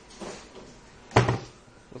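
Handling noise from a large 360 mm triple radiator being moved about: a short rustle, then one sharp knock a little over a second in.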